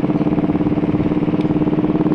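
Motorcycle engine running steadily while riding along at a constant low speed, its pitch holding level throughout.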